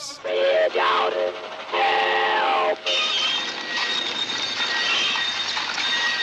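Soundtrack of a 1940s black-and-white film playing sound effects: a pitched, whistle-like call that slides down in pitch and breaks off suddenly about three seconds in, then a steady hissing clatter with thin high tones, much like a train.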